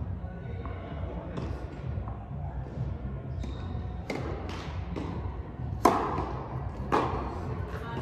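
Tennis balls struck by rackets and bouncing on an indoor court, sharp pops that echo in a large hall. The two loudest strikes come about a second apart past the middle, over a steady low hum.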